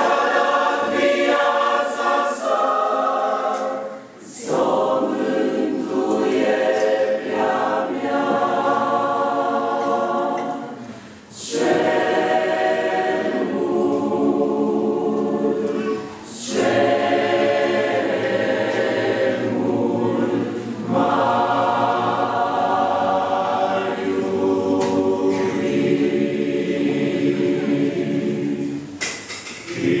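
Mixed church choir singing a Romanian hymn a cappella, in long held phrases broken by short breaths.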